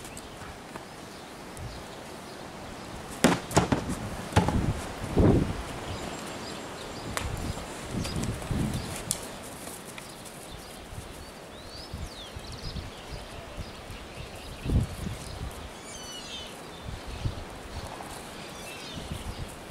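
Outdoor ambience with a few sharp knocks and thuds about three to five seconds in and another near the end, and faint bird chirps in the second half.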